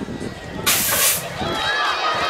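BMX start gate dropping: one loud burst of hiss about half a second long, starting about two-thirds of a second in, from the gate's air release. Shouting voices rise just after.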